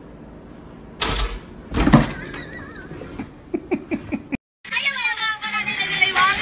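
Two loud thumps about a second apart, then a few lighter clicks. After a brief gap near the end, a woman bursts out laughing.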